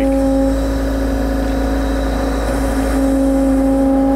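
John Deere 325G compact track loader running as it drives up toward the truck bed, a steady engine hum. The hum eases off a little after the first half second and comes back strong about three seconds in.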